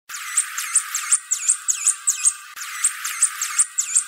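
A bird chirping over and over, about three high, thin chirps a second, each a quick downward-and-back-up sweep.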